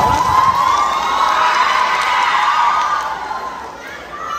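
Audience cheering, many voices at once, dying down over the last second.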